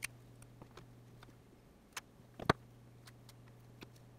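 A few light, sharp clicks of snap-setting pliers squeezing a metal snap into a leather sheath, the loudest about two and a half seconds in, over a low steady hum.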